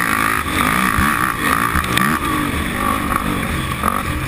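Sport quad (ATV) engine racing on a dirt track, its pitch rising and falling several times as the throttle is opened and shut and gears change.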